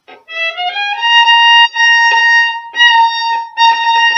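Solo violin: a quick rising run of notes in the first second, then a single high A-sharp bowed again and again in several separate strokes, the note being located for the start of the passage.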